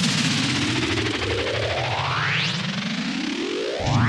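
Synthesized intro sting for a DJ mix: a dense electronic drone with a low pulsing layer and two rising swooshes, the first peaking about two and a half seconds in, the second climbing up near the end.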